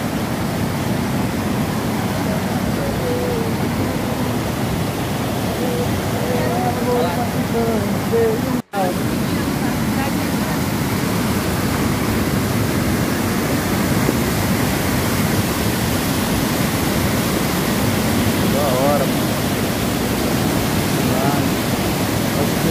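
Waterfall: water rushing steadily over rock ledges, heard up close. The sound cuts out for an instant about nine seconds in.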